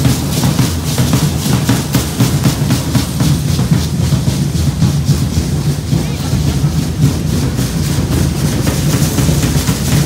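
Matachines dance drumming: a drum beating a steady, quick rhythm without a break.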